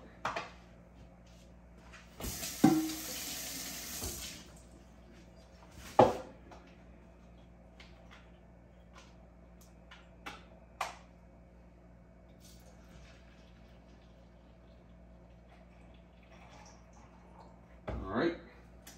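Liquid poured for about two seconds, starting with a ringing clink, followed by a few single knocks and clicks of kitchenware.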